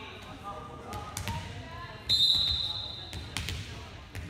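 A referee's whistle blows one steady blast of a little over a second, about two seconds in: the signal that authorizes the serve. Around it, a volleyball bounces a few times on the gym floor as the server readies her serve.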